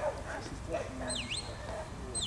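A shepherd's whistle command to a working sheepdog: one short whistle, about halfway through, that dips in pitch and rises again.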